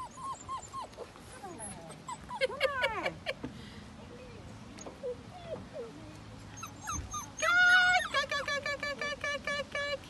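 A young puppy on a leash whimpering and yelping in short, high, falling cries. About seven and a half seconds in comes a loud drawn-out squeal, then a fast run of short squeals to the end.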